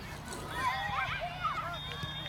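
High-pitched young voices shouting and calling out over one another, several short overlapping cries, over a low steady rumble.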